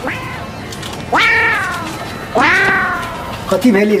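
A cat meowing twice, two long loud calls one right after the other, each rising sharply and then sliding slowly down.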